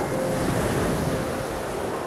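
A sea wave breaking and washing up a pebble beach; the rush of surf swells quickly at the start, then slowly ebbs away.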